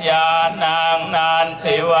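Buddhist monks chanting Pali verses in a steady, near-monotone recitation, the syllables held and linked with short breaks about every half second.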